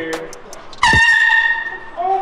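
One blast of a handheld canned air horn, starting a little under a second in and held steady for about a second.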